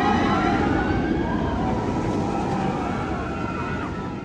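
Jurassic World VelociCoaster, an Intamin steel launched coaster, running a train through its track: a steady rumble of wheels on steel with a whine that rises and falls over it.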